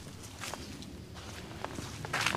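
Faint footsteps of a person walking, a few soft steps.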